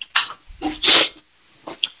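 A person sneezing once, the loud hissy burst coming about a second in.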